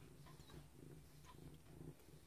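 A domestic cat purring faintly while its fur is being brushed.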